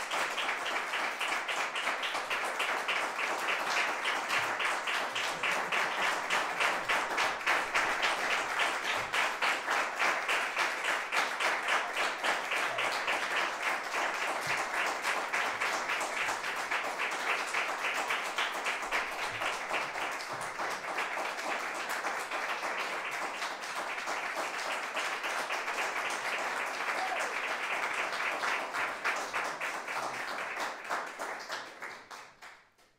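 Audience applauding steadily, with dense clapping that eases slightly in the second half.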